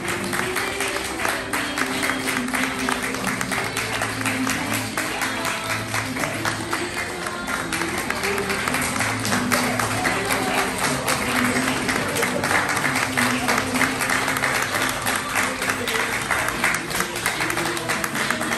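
An audience clapping steadily and densely throughout, over music.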